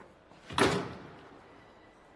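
A door closes with a single loud knock about half a second in, which dies away over about half a second.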